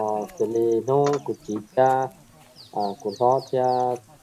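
A man speaking, with a pause about halfway through in which a bird gives a quick run of short falling chirps.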